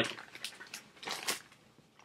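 Potato chips being chewed: a handful of short, crisp crunches in the first second and a half.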